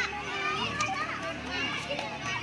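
Many children's voices overlapping at once, chattering and calling out.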